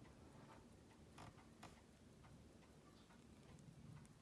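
Near silence with a few faint, irregular clicks of steel tweezers touching the parts of a partly dismantled Seiko 6117 watch movement.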